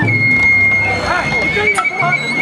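Sawara-bayashi festival music from the float: a bamboo flute holding one high note, with a large drum struck at the start and again near the end, each stroke ringing on. Men's shouts and calls are heard over it.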